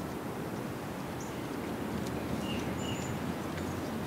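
Outdoor background: a steady rush of noise with a few short, high bird chirps.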